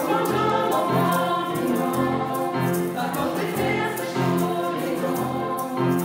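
Live song in Luxembourgish sung by young vocalists into microphones, accompanied by grand piano and violins, in held notes that change every half second or so.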